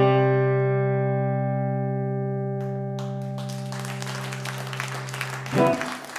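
Final chord on an electric guitar ringing out and slowly fading, with a noisy hiss filling in beneath it from about three seconds in. A brief louder sound cuts in near the end.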